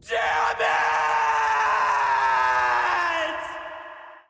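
A man's long, drawn-out yell of "Damn it!", a cry of frustration held for nearly four seconds. The pitch slowly falls, and the yell fades away near the end.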